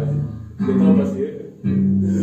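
Live band of electric guitar, bass guitar and keyboard playing a slow passage. A new chord is struck about half a second in and another near the end, each ringing on.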